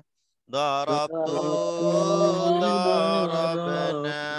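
Voices chanting in unison, reciting the Arabic verb conjugation of ḍaraba (ḍaraba, ḍarabā, ḍarabū…) in a sing-song memorisation chant. It drops out briefly at the start and picks up again about half a second in.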